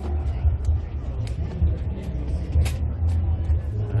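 A steady low rumble with scattered short, sharp clicks and knocks over it.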